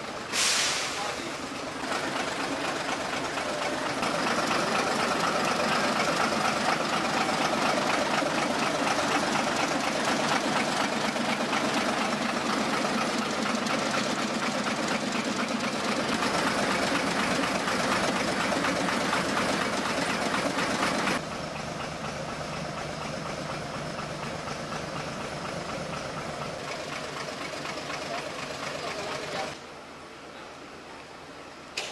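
Railway station ambience beside a standing narrow-gauge train: an engine running steadily under people's voices, with a sharp loud clank just after the start. The sound drops suddenly to a quieter level about two-thirds of the way through.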